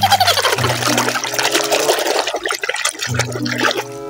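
Water splashing and sloshing in a plastic tub of soapy water as a hand churns a toy through it, with irregular splashes throughout.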